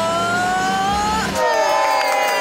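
A woman belting one long held high note that slowly rises in pitch, then a little over a second in a second held sung note takes over.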